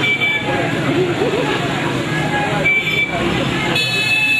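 A procession's mixed street noise: a crowd of voices over motorcycle and car engines. Short high horn toots come near the start and again later, and a long high-pitched tone begins just before the end.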